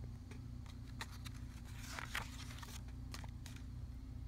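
A picture book's paper page being turned: faint rustling with scattered light clicks, the rustle strongest about two seconds in, over a steady low hum.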